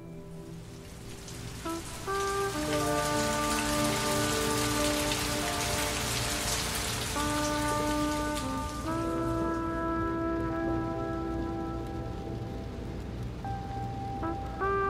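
Steady rain, swelling about a second in and easing toward the end, under held musical chords that change every few seconds.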